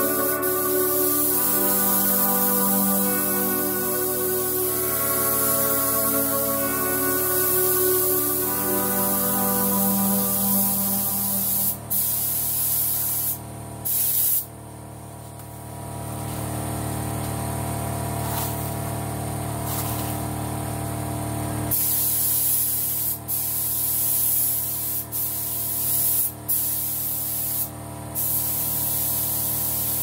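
Compressed-air paint spray gun hissing steadily as a car body is sprayed with sealer. The trigger is let off briefly several times in the second half, with a longer break about halfway through. Background music plays under the hiss for roughly the first ten seconds.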